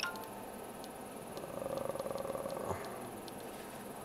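Faint clicks of the front-panel buttons on an XTA DP424 audio processor being pressed one after another, over low background noise, with a faint steady tone for about a second in the middle.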